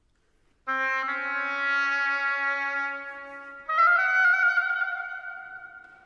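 Oboe and string orchestra playing long held notes after a short silence: a low held note comes in about a second in, and a louder, higher note enters just past the middle and then fades away.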